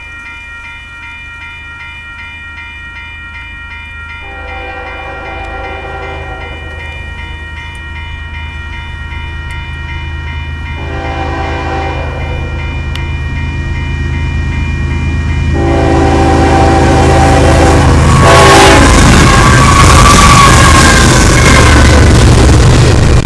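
Westbound Union Pacific double-stack train led by GE Evolution-series (Gevo) diesel locomotives approaching fast, sounding its multi-note air horn in three long blasts for the grade crossing and growing steadily louder. About eighteen seconds in the locomotives pass close by and the loud rush of engines and wheels on rail takes over as the stacked container cars go past.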